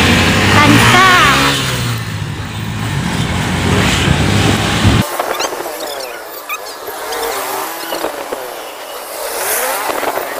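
Road and wind noise from riding a motor scooter through town traffic, with a heavy low rumble and muffled voices. About halfway through the low rumble drops out abruptly, leaving a thinner traffic noise.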